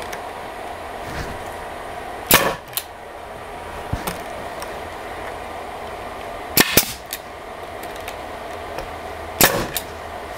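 Pneumatic brad nailer firing brads into painted wood boards: a sharp shot about two seconds in, a quick pair of shots midway, and another near the end. The brads are not driving fully in and are left sticking out.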